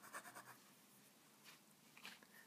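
Broad steel nib of a Sheaffer calligraphy fountain pen scratching faintly across paper in a few quick strokes, which fade out about half a second in. The pen is being tried just after a new cartridge has been pushed onto the nib.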